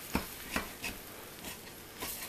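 Butcher knife cutting through a deep-dish pizza in a cast-iron skillet: three short knocks in the first second, then a fainter one.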